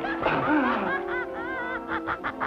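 Horror film score with sustained notes, under a person's wavering vocal sounds that rise and fall in pitch, laughter-like in places.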